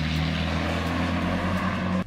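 Land Rover Defender 90's 200Tdi four-cylinder turbodiesel engine running at a steady pitch while driving, heard from inside the cab.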